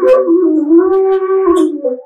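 Pipe flute made from a white plastic tube, blown close to a microphone. It plays a wavering melody of sliding notes in a low-middle register that stops just before the end.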